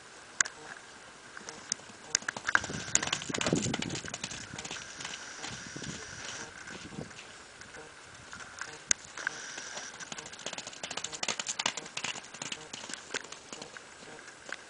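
Hoofbeats of a young palomino colt running loose on soft, wet pasture: irregular thuds and clicks in bursts, loudest about three seconds in and again in a run of quick hits in the second half.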